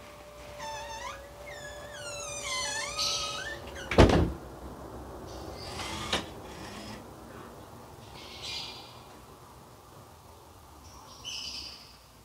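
Alexa-controlled motorized door swinging closed: a steady hum with high squeaks sliding up and down in pitch, then the door shutting with a loud thunk about four seconds in and a smaller click a couple of seconds later.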